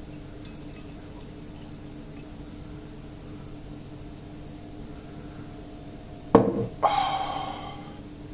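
Home-brewed beer poured quietly from a bottle into a pint glass, over a faint steady hum. A little after six seconds comes a sudden louder sound, followed by a short tone that fades away.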